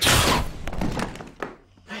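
Sudden hissing blast of gas from a gas gun fired at close range, fading within about half a second. It is followed by a few dull thuds as the person hit goes down onto the floor.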